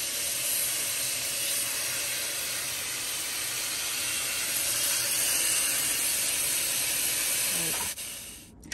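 Kitchen tap running a steady stream of water into a stainless-steel sink of greens soaking in water, rinsing the leaves; an even, steady hiss of splashing water.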